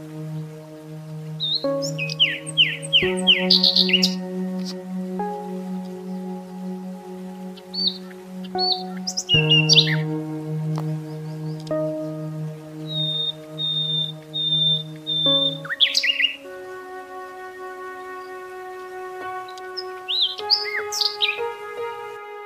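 Slow ambient meditation music of sustained chords that change every few seconds, laid over recorded birdsong: several bursts of quick chirps and, in the middle, a run of five even whistled notes.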